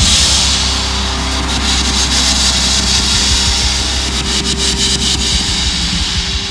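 Drum kit played along to a song's backing track. A cymbal crash at the start rings on over the track's held low notes, with more cymbal and drum hits through the middle.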